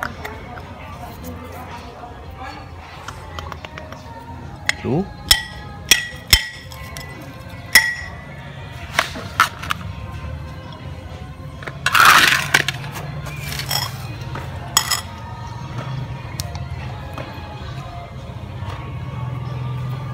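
A series of sharp, ringing clinks of something hard against a ceramic plate, several close together in the middle, then a brief scraping rustle, over a steady low background hum.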